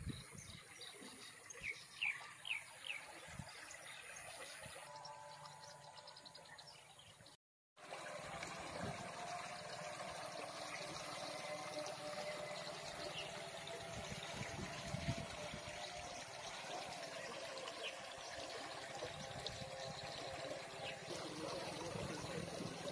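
Faint water trickling and flowing in a canal. The sound cuts out completely for a moment about seven and a half seconds in.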